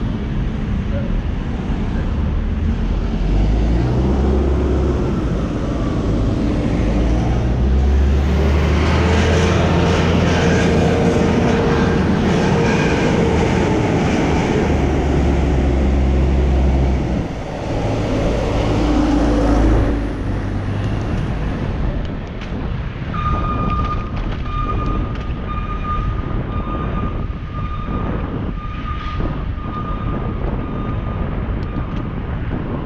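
Continuous road and traffic noise heard from a bicycle on a city street, with a heavy low engine rumble through the middle. About two-thirds of the way through, a steady high-pitched tone begins and runs on.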